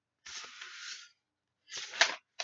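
Paper and handling noises of an open hardback book being moved and lowered: a soft rustle lasting most of a second, then two brief louder scuffs near the end.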